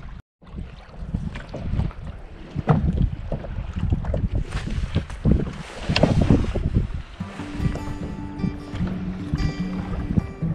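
Strong headwind buffeting the microphone over choppy water lapping at a kayak, in uneven gusts. About seven seconds in, background music comes in over it.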